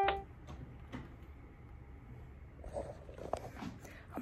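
Quiet room with faint handling noise from a phone camera being held and moved: a few light clicks and soft rustles, busier near the end. The last note of background piano music cuts off at the very start.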